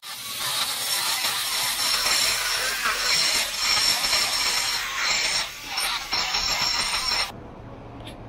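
Die grinder grinding steel, cleaning leftover flux and gouging residue out of a weld groove: a steady high whine with a couple of brief dips, cutting off a little after seven seconds.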